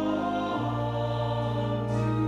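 Slow sacred choral music: sustained, held chords, with a change of chord about half a second in.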